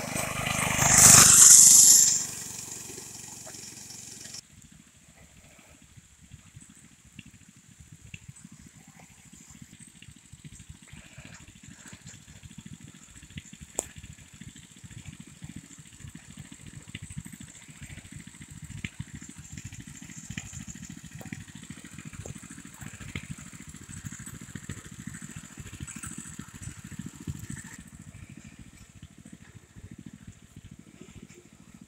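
A mini bike passes close by, its engine loud for about two seconds just after the start. From about four seconds in there is low wind buffeting on the microphone, with faint outdoor background.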